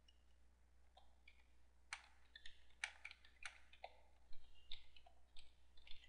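Computer keyboard being typed on: a faint run of irregular key clicks that begins about a second in.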